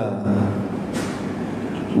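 A steady low hum of room noise fills a pause between chanted phrases, with one short click about a second in.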